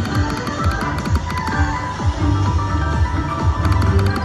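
Triple Coin Treasure slot machine playing its electronic free-spins bonus music, with clusters of quick ticks near the start and near the end as a free spin runs on the reels.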